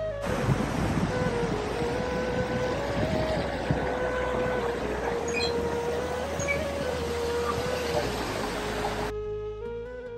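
Background music with a slow, stepping melody over the steady rush of a fast, rocky mountain stream. The water noise drops away about nine seconds in, leaving the music.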